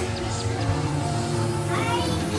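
Background music with steady held notes, and a short rising meow-like call near the end.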